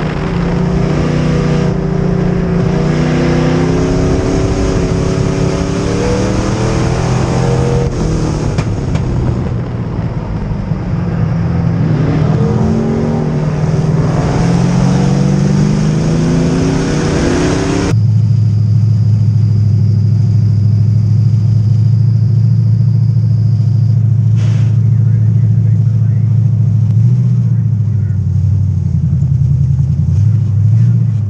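Bomber-class dirt-track race car's engine heard from inside the cockpit, running at changing revs with its pitch rising and falling. About 18 s in it settles abruptly into a steady, lower drone as the car slows to a crawl.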